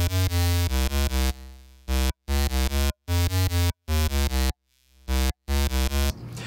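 An FM bass synth in Ableton Live's Operator plays a bass line while the decay and sustain of its amp envelope are turned down. The notes are short and cut off abruptly, with silent gaps between them, giving a gated feel.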